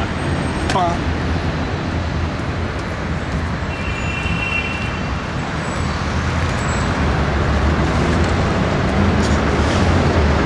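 Steady road traffic noise from passing cars, a continuous rumble that slowly grows louder.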